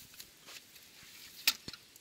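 Small handling knocks, then a sharp click about one and a half seconds in and a smaller one just after: the metal latch on the hinged wooden back panel of a pallet-wood chicken coop being undone.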